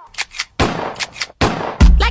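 Gunshot sound effects in a hip-hop song: two sharp cracks, a longer noisy burst of fire, another crack, then the beat comes in with heavy bass just before the end.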